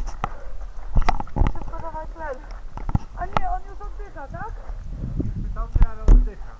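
Several sharp knocks and clatters of diving equipment being handled on the ground, the loudest about a second in and just before the end, with voices calling in between.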